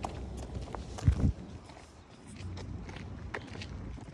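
Footsteps on a concrete sidewalk, with a brief low thump about a second in.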